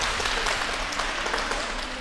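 Applause: many hands clapping, starting suddenly and easing off slightly toward the end.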